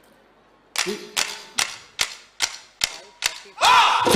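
A count-in of seven sharp percussion strikes for a Bihu performance, evenly spaced at about two and a half a second, each ringing briefly. Near the end the Bihu music swells in loudly with a rising-then-falling note.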